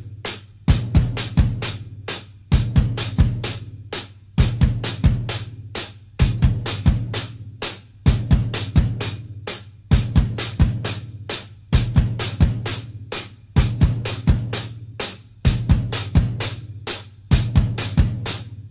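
Acoustic drum kit: closed hi-hat struck with a stick in steady eighth notes, about four strokes a second, with bass drum kicks falling into a one-bar pattern that repeats roughly every 1.8 seconds. It is a beginner's hand-and-foot independence exercise on hi-hat and bass drum.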